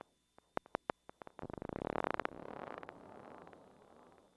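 Yamaha FB-01 four-operator FM tone module playing a patch from the VB3 voice bank: scattered clicks that quicken into a rapid pulsing burst about a second and a half in, then a hissy wash that slowly fades away.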